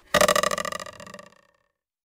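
Synthesized title-card sound effect: a fluttering, pitched tone with several steady notes that starts sharply and fades out over about a second and a half.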